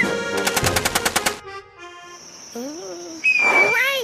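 Cartoon soundtrack: a burst of music with rapidly repeated notes, about a dozen a second, for the first second or so. Then come sliding, squeaky pitched sounds and, near the end, a loud brief high whistling tone with a hiss.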